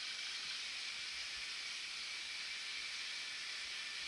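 A steady, faint high hiss with a thin steady high tone running through it.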